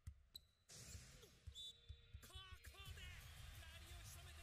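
Near silence, with the faint sound of a volleyball match underneath: short squeaks and a few soft thuds like sneakers and ball on a court.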